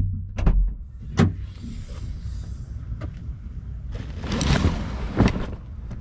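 Knocks from tools in a bag in a car's closed cargo area over a low rumble, then the hatchback's rear hatch unlatching and opening, with a noisy stretch and a sharp clunk a second before the end.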